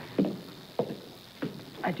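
Footsteps of a person walking away across a hard floor: three distinct steps about half a second apart.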